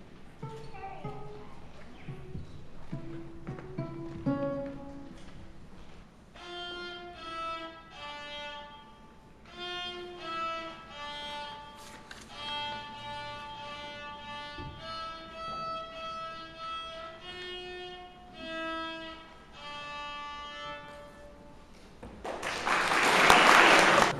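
A child's acoustic guitar played with short plucked notes for the first few seconds. Then a violin plays a slow, simple melody of held bowed notes. Near the end, loud applause breaks out.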